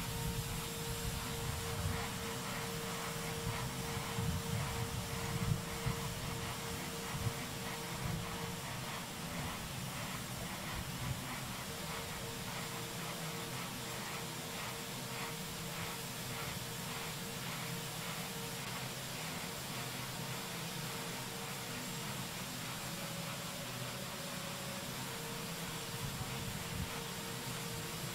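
Steady hiss with a faint steady hum tone and a low rumble underneath, with a few faint ticks in the first half.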